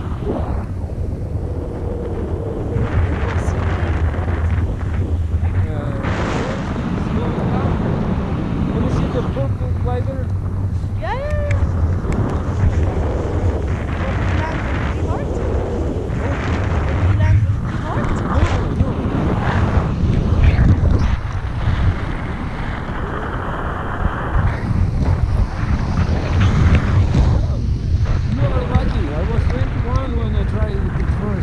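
Wind buffeting an action camera's microphone during a tandem paraglider flight: a steady, loud low rumble of rushing air, with brief voice sounds now and then.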